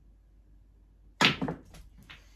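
Snooker shot on a small 6x3 table: a sharp clack of cue and balls a little over a second in, followed by a few quicker, fainter knocks as the balls collide and run on.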